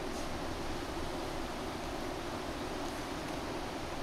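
Steady rushing of a mountain river running over rocks and rapids.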